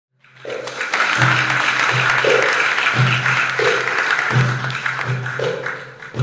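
Darbuka (goblet drum) played slowly, deep ringing doum strokes every half second to second with a few higher strokes between them, over audience applause that thins out near the end.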